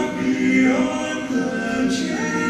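Male barbershop quartet singing a cappella in four-part close harmony, holding sustained chords that shift in pitch as the voices move.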